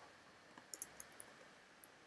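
A few faint keystroke clicks from a computer keyboard during typing, about six light taps, most of them between half a second and just over a second in, against near silence.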